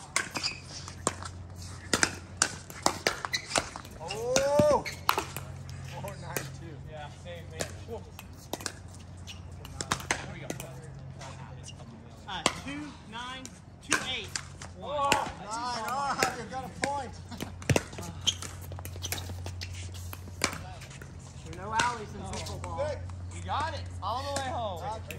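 Pickleball rally: paddles striking a plastic pickleball, a run of sharp pops at irregular intervals of roughly half a second to a second, with a few short vocal exclamations between shots.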